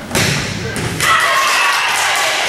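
A loud volleyball thump just after the start, with more knocks a little later, then girls' voices shouting and cheering as the rally ends.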